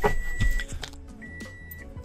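A car's electronic warning chime beeping twice, one steady high tone of about half a second each with a short gap between, before the engine is started. A click sounds at the very start.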